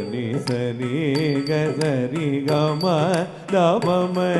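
Live Carnatic music accompanying a Bharatanatyam varnam: a voice sings a melody whose pitch wavers and bends continuously, over a steady low drone. Short sharp percussive strikes are heard through it, and the music drops briefly a little after three seconds before the voice glides back in.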